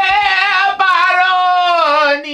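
A high singing voice holding a long note with vibrato, broken briefly just under a second in and then taken up again.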